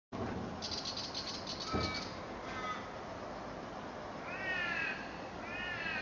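Birds calling outdoors: a rapid high chatter early on, short pitched notes, then two long curved calls about a second apart near the end. There is a single thump a little under two seconds in.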